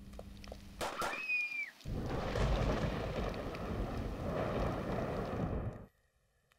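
Rain-and-thunder sound effect: a sharp click and a short high cry falling in pitch, then a dense hiss of rain over a low rumble from about two seconds in, cutting off abruptly just before the end.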